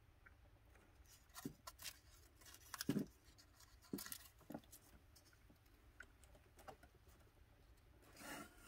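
Faint, scattered light clicks and scrapes of hands handling a tube of super glue and a thin wooden coffee-stirrer strip against a dollhouse wall, the loudest about three seconds in.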